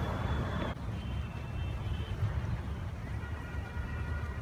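Steady low rumble of road traffic. A short hiss stops sharply under a second in, and faint thin high tones come in during the second half.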